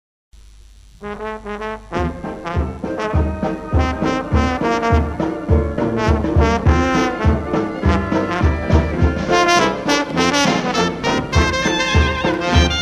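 Dixieland jazz band starting a number after a silent gap between tracks. A few brass notes lead in about a second in, then the full band with trumpet and trombone comes in over a steady beat.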